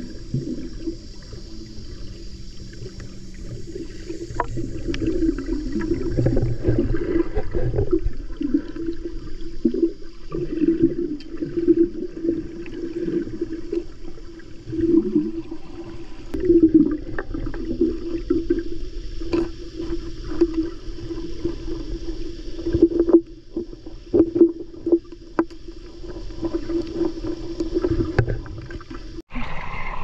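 Muffled underwater sound picked up by a camera held below the surface while snorkeling: water swishing and gurgling in uneven surges over a low rumble. The sound cuts out suddenly for a moment near the end.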